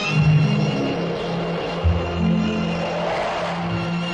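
Instrumental interlude of a 1950s Hindi film song: orchestral strings holding long notes over low bass notes, with a brief swell about three seconds in.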